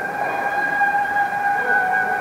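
A steady, high-pitched held tone with a stronger overtone above it, unchanging in pitch and loudness throughout.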